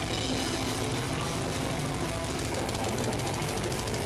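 Deathcore band playing live, drums and guitars at a steady loud level, with a fast, even drum pattern through the second half.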